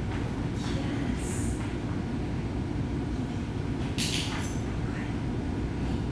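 A steady low rumble, with a few brief rustles or scuffs; the loudest comes about four seconds in.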